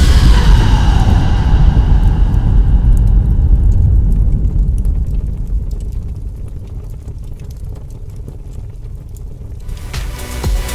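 Explosion sound effect: a loud boom whose hiss fades over the first few seconds, leaving a deep rumble that slowly dies away, with faint scattered crackles.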